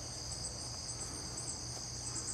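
A chorus of insects chirping: a steady high-pitched buzz with a quick, even pulsing above it.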